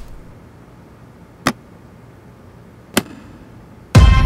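Two sharp clicks about a second and a half apart, from snap buttons on a denim jacket being fastened.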